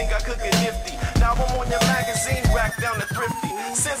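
Hip-hop beat with a steady kick drum and a voice rapping over it; the kick and bass drop out briefly near the end.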